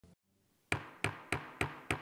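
Five sharp raps in a quick, even series, about three a second, each dying away with a short ring.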